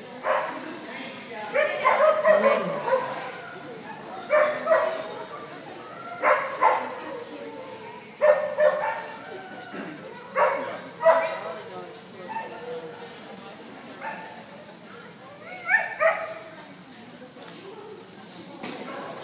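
A dog barking repeatedly, in short clusters of one to three barks about every two seconds, with a longer gap before a final pair near the end.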